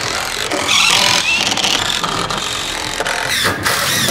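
Cordless impact driver running, driving a screw into a wooden stud, with a short break a little over three seconds in.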